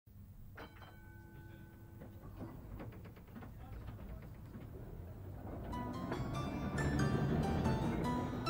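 A low rumble of street and tram noise, with a held, bell-like ringing tone near the start and then a run of clattering knocks. Music with a bright, stepping melody comes in about six seconds in and grows louder.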